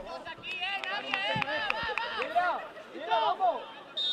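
Several voices shouting and calling at once across an open football pitch, with crowd chatter behind them.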